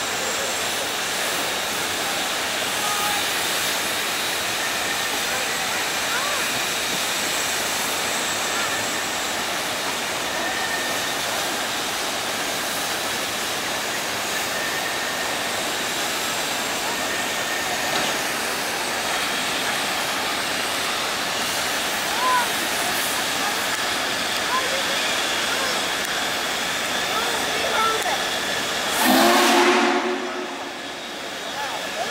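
Steady loud hiss of steam from the standing Union Pacific 'Big Boy' steam locomotive. Near the end, a short, loud chord-like blast from a train.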